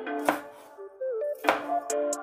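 A cleaver chopping red chilies on a cutting board: two sharp knife strikes about a second apart, over background music.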